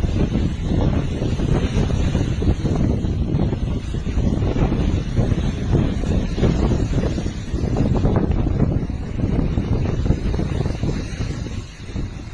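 Wind buffeting the microphone of a phone: a continuous, gusting low rumble that rises and falls, easing slightly near the end.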